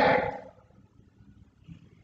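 The end of a man's spoken word fading out in the first half second, then near silence: room tone.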